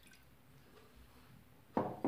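Near quiet: faint room tone after milk has been poured into a ceramic bowl, then a short burst of noise near the end.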